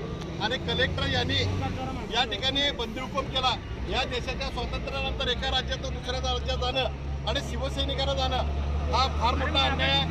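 A man talking in the middle of a crowd, over a steady low engine hum from a vehicle running.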